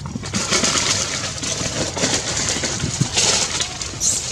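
Outdoor ambience: birds calling over a high hiss that swells and fades, with scattered clicks.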